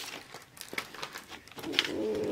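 Crayon scratching on paper in short strokes, faint, as a pig is drawn.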